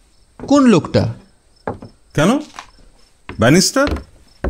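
A man's voice in short spoken utterances, three brief bursts with pauses between. A faint, high, steady tone lies underneath.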